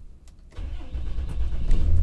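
Cummins inline-six turbo diesel of a 2008 Dodge Ram 2500 starting about half a second in, heard from inside the cab. Its low rumble builds and settles into steady running.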